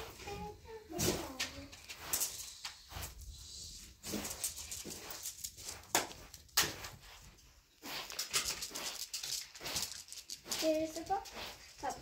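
Short, irregular scratchy strokes and light clicks: a straw hand broom sweeping a carpet, and small cardboard matchboxes being set on end in a row as dominoes.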